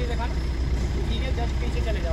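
Car engine idling, a steady low hum heard from inside the cabin, with people talking over it.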